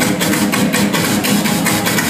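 Dubstep played loud over a club sound system: fast, crisp percussion ticks several times a second over a mid-range bass line, with the deepest sub-bass thinned out.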